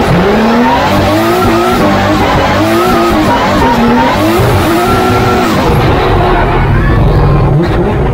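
Toyota GR86 D1GP drift car heard from inside the cockpit during a drift, its engine revving up and down in repeated swings over loud, continuous tyre squeal and skidding.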